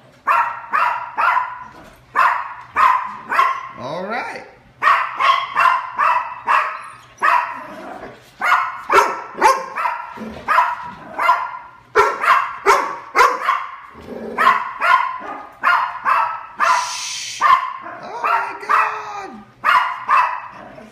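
Dogs barking in quick runs of short, sharp barks, two to three a second, eager for their dinner. A brief scratchy noise cuts in a little past two-thirds of the way through.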